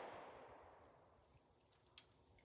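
Near silence, opening with the last of a revolver shot's report dying away in the first half-second: a .38 Special fired from a two-inch snub-nose revolver.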